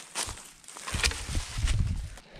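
Footsteps crunching through dry leaf litter and brush, with a sharp click just after the start and a run of irregular low thumps and crackles in the second half.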